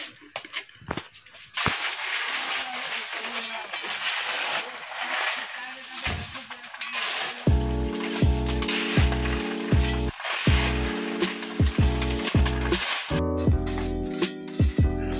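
Crushed stone aggregate being scooped and stirred by hand in a metal tray, a gritty rattling of stones. About halfway through, background music with a steady beat comes in and continues.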